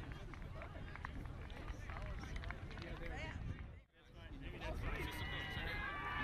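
Sideline sound of a soccer match: scattered shouts and calls from players and onlookers over low wind rumble on the microphone. Just before four seconds in, the sound drops out briefly, then comes back with more voices and a cluster of high, steady tones near the end.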